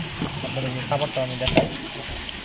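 Crowded Vietnamese koi (climbing perch) fingerlings flapping in shallow water in a metal basin, a continuous crackling patter of small splashes, with one louder knock about one and a half seconds in.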